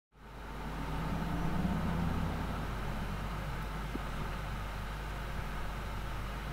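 Steady low mechanical hum with a few low pitched tones, fading in just after the start and slightly stronger for the first few seconds.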